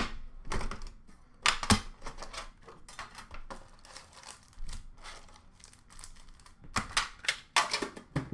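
Trading card boxes and foil card packs being handled and opened: irregular crinkling, rustling and tearing, with louder bursts near the start and again near the end.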